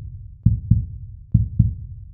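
Heartbeat sound effect: low double thumps (lub-dub), the two beats of each pair about a quarter second apart, repeating a little under once a second.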